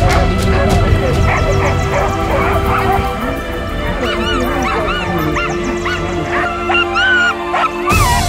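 Harnessed sled-dog huskies whining and yipping in many short rising-and-falling calls, denser in the second half, over background music with steady held notes.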